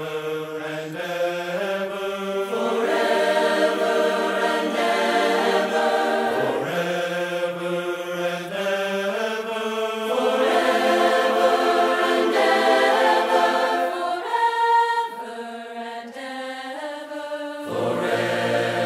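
A choir singing a four-part hymn without accompaniment, the parts entering one after another on the words "forever and ever" in sustained chords. It drops softer for the last few seconds.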